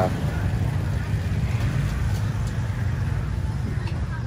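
A steady low rumble of outdoor street noise at a busy market.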